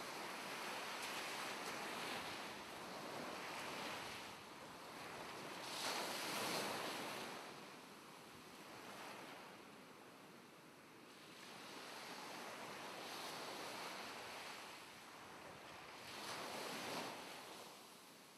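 Sea waves washing in and ebbing, swelling and fading in several surges, the loudest about six seconds in and again near the end.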